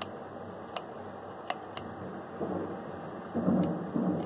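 A few small irregular clicks from a soldering iron tip and wires being worked against the circuit board of an opened LED bulb, over a steady background hiss. Louder handling noises come in during the last second and a half.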